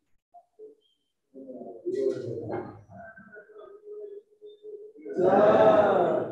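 A man's voice chanting with long, slightly wavering held notes, growing loud just before the end.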